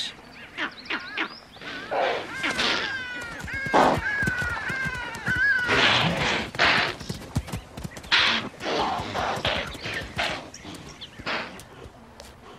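A flock of bee-eaters calling in short, quick chirps. Several splashes break in as the birds dip into the water and crocodiles strike at them.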